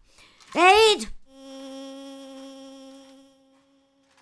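A short shouted word, then a steady, even-pitched mosquito wing buzz for about two seconds, fading out.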